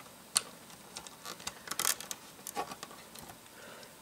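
1x1 LEGO bricks being pressed onto the studs of a LEGO plate chassis: a scatter of light plastic clicks and taps, one sharp click about a third of a second in and a cluster near the two-second mark.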